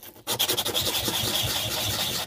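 Wooden pendant with silver wire inlay and a silver bezel cup rubbed by hand on 240-grit sandpaper: a steady scraping rasp that starts about a quarter second in. This sands the silver wire stars flush with the wood and the bezel edge.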